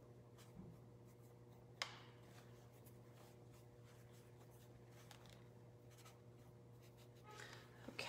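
Near silence with a steady low electrical hum, and faint scratching and tapping of a brush mixing white into acrylic paint on the palette; one small sharp click a little under two seconds in.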